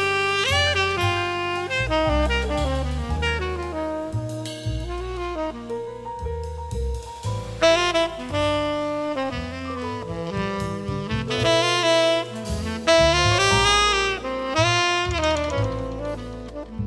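Big band jazz: a saxophone section carrying a melodic line with brass and a drum kit behind it, punctuated by a few sharp drum hits.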